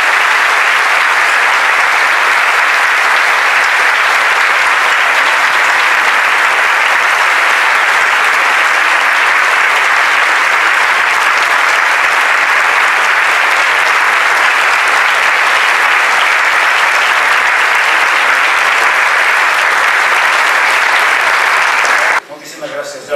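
Audience applauding: loud, dense, steady clapping from a large seated crowd that cuts off suddenly at the end.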